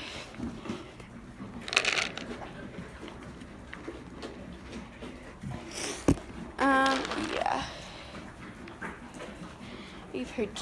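Rustling and handling noises as grain is hand-fed to a barn animal, with a sharp knock about six seconds in and a short pitched vocal sound just after it.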